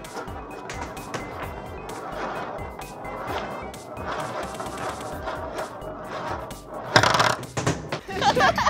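Several small balls rolling and rattling around a spiral gravity-well funnel, under light background music. A short loud whoosh comes near the end.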